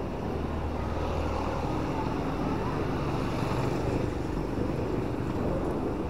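Road traffic going by: a steady hum of car and motorbike engines with tyre noise.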